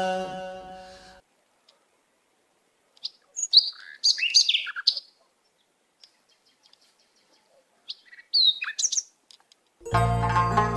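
Small birds chirping and whistling in two short bursts of high calls, against otherwise dead silence. Music fades out in the first second, and plucked-string music starts right at the end.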